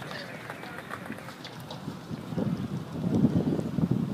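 Wind buffeting the microphone: a low, irregular rumble that grows louder about halfway through, over faint background voices.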